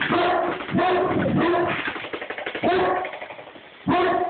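Bullmastiff barking: about four long, deep barks, with a pause before the last one near the end, over a fast, continuous rattle.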